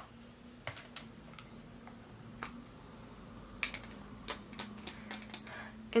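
Light plastic clicks and taps of makeup cases and tools being handled: a few scattered clicks at first, then a quick run of about a dozen in the second half, over a faint steady hum.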